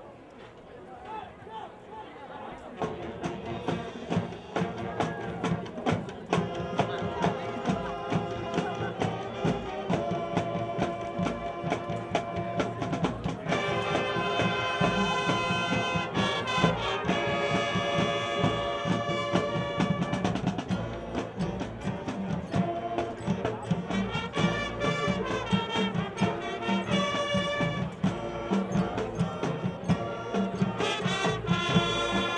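High school marching band playing its halftime show, brass with drums and percussion, starting about three seconds in and growing louder.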